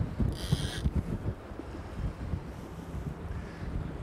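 Wind buffeting the microphone over the low rumble of a boat at sea, with a short high hiss about half a second in.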